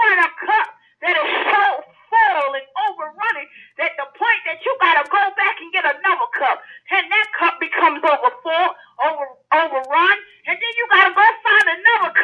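Speech only: a preacher's voice talking continuously, with no other sound.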